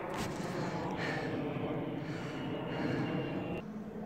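Close rustling and rubbing from the phone being handled, fingers moving against its microphone; it eases off near the end.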